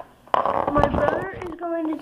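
Speech: a child talking, drawing out one word near the end.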